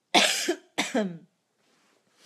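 A woman coughing twice into her fist: two loud coughs about two-thirds of a second apart.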